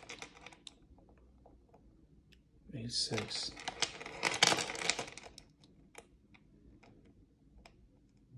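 Heavy 8 mm 14k gold Cuban link chain clinking and rattling in the hand as its links knock against each other. There are scattered light clicks, and a dense clatter of links from about three to five seconds in.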